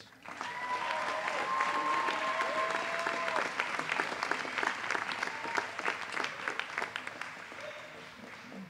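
Audience applause for a graduate whose name has just been called, with a long held cheer over the clapping in the first few seconds. The clapping fades near the end.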